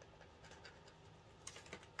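Faint scratching and light ticks of a gel pen writing on a cardboard package backing, with a small cluster of clicks about one and a half seconds in.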